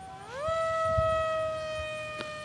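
Brushless electric motor and propeller of a Wild Hawk foam RC airplane whining in flight. The pitch rises sharply about half a second in, then holds steady and eases slightly lower.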